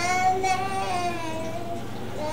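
A young child's voice holding one long, high-pitched note, dipping slightly near the end.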